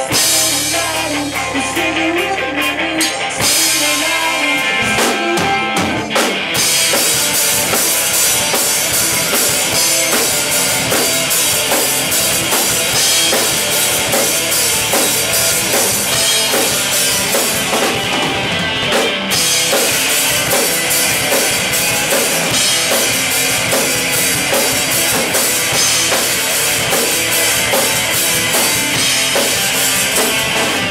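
Rock band playing live, loud: drum kit, electric guitars and bass together. The full band fills out about six seconds in.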